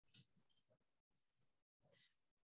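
Near silence with a few faint, short clicks in the first second and a half.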